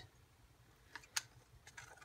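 A few faint clicks and taps of a stir stick and paint cup against a glass jar as acrylic paint is scraped out of the cup, the sharpest tap a little over a second in.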